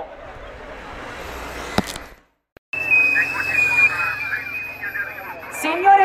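A car approaching, with an even rushing noise that grows a little louder and then cuts off abruptly. After half a second of silence come crowd voices over a steady high-pitched tone.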